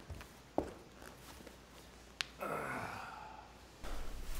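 A couple of light taps, then a sharp click about two seconds in, followed by a breathy human sigh that falls in pitch and lasts under a second.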